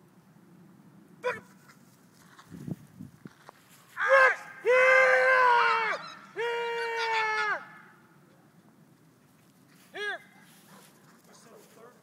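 A person shouting three loud, long, drawn-out calls in a row in the middle, each held at one steady pitch, with a single short call about a second in and again near the end.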